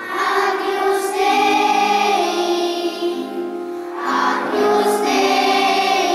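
A group of children singing a song together in a church, starting at the opening. One phrase runs about three seconds, then there is a short dip and a second phrase begins about four seconds in.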